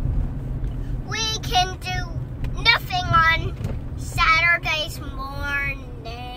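A young child singing in four short, high, wavering phrases, the last one lower and drawn out. Under it is the steady low rumble of a car's cabin.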